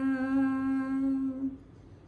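A woman's unaccompanied singing voice holds one steady note, the drawn-out end of a sung line in a Bhojpuri beti geet. The note lasts about a second and a half, then fades away and leaves quiet room tone.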